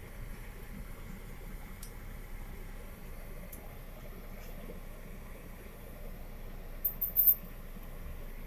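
Car cabin noise from a Mercedes being driven slowly: a steady low engine and road rumble, with a couple of short sharp clicks about seven seconds in.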